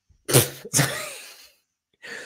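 A man laughing: two short, breathy bursts close together, the second trailing off.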